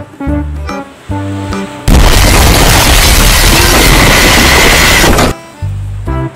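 Background music with a bouncy beat, broken about two seconds in by a loud explosion sound effect that lasts about three seconds and cuts off suddenly, after which the music carries on.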